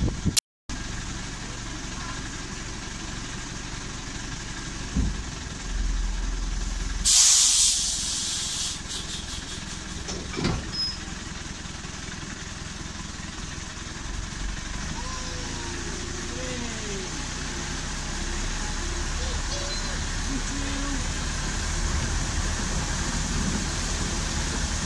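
Narrow-gauge Baguley Drewry diesel locomotive running steadily close by. About seven seconds in there is a sharp, loud hiss of released air lasting about a second, followed by a few clicks, and the engine keeps running as the train gets moving.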